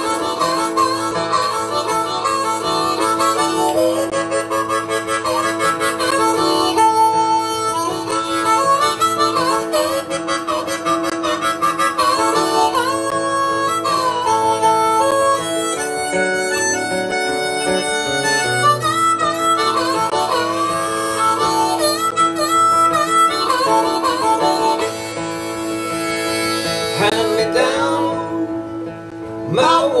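Harmonica solo over acoustic guitar accompaniment in a blues-folk tune, the harmonica holding and bending notes up and down. Near the end the harmonica drops out and the guitar carries on alone.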